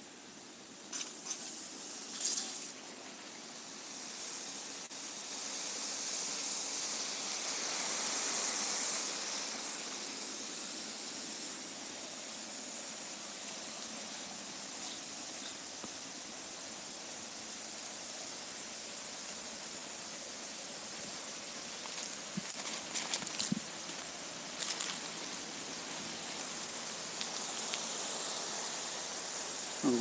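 Water spraying under pressure from a black plastic irrigation pipe, a steady hiss that gets louder about a second in. A few brief crackles come between about 22 and 25 s.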